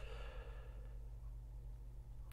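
A man's soft breath in a pause between sentences, fading out within about a second, over a steady low hum.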